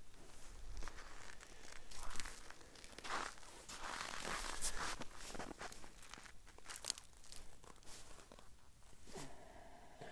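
Boots crunching and scuffing on snow-covered ice, with clothing rustling, in a run of irregular steps and shuffles, loudest about two seconds in and again from about three to five seconds in.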